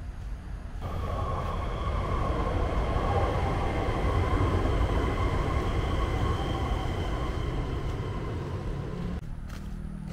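Singapore MRT train passing on the elevated viaduct overhead: a rumble of wheels on rail with a steady multi-tone whine. It comes in about a second in, is loudest mid-way and drops away suddenly near the end.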